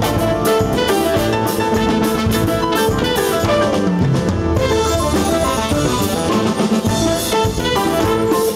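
Live big-band jazz: a saxophone and trumpet section playing over drum kit and hand percussion, with a steady beat.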